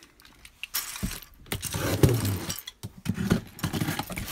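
A taped cardboard shipping box being handled and cut open with a cutter: irregular scraping and rustling of cardboard and tape with several sharp clicks, starting about a second in.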